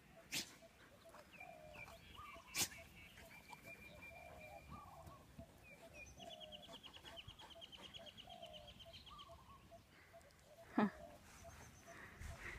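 Faint outdoor ambience with birds calling over and over in short chirps, a fast high trill in the middle, and two sharp clicks early on. Near the end a dog gives one short bark, falling steeply in pitch.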